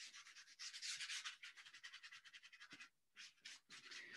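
Paintbrush rubbing wet watercolor paint onto watercolor paper: faint, rapid scratchy strokes, a little louder about a second in, with a brief pause near three seconds.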